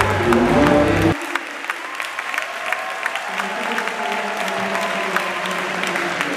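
Music that cuts off abruptly about a second in, followed by a crowd applauding: many scattered hand claps with voices underneath.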